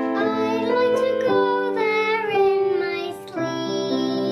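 Music: a child's voice singing a melody over steady held instrumental notes, with a short break a little past three seconds in.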